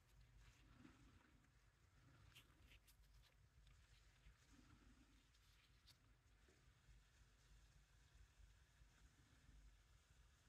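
Near silence: room tone, with a few faint small clicks and taps in the first half, as from handling nail-stamping tools.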